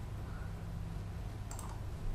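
A single sharp computer-keyboard click about one and a half seconds in, over a steady low hum.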